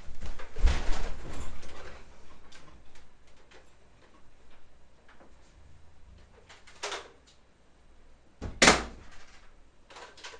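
Knocks and thumps in a small room: a cluster of heavy thumps about a second in, a few light clicks, then one sharp, loud knock near the end as something strikes the wall hard enough to chip it.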